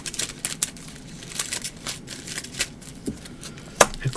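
Cards being handled and laid down on a tabletop: a run of light clicks and rustles, with one sharper snap near the end.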